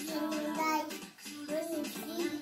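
A young child's voice singing a simple melody over music, in two phrases with a short break about a second in.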